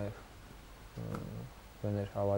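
Only a man's speech: a phrase trailing off, a pause of about half a second, a short low voiced sound about a second in, then speech resuming near the end.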